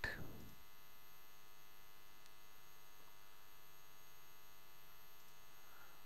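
Steady, faint electrical hum with a thin high whine: the noise floor of the recording setup, with a couple of faint clicks in the middle.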